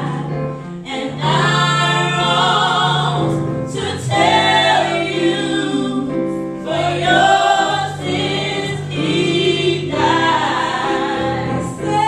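Three women singing a gospel song in harmony into microphones, with piano accompaniment, in sung phrases a few seconds long separated by short breaths.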